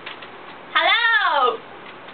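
A woman's voice making one drawn-out, high-pitched call a little under a second in, its pitch rising and then falling, like a sing-song exclamation.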